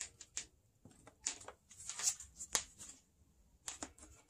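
Gloved fingers picking and peeling at packing tape and a plastic packing-slip envelope on a cardboard box: faint, scattered crinkles and ticks with short gaps between them.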